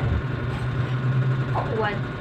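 A steady low hum runs under the scene, with a woman's voice coming in near the end.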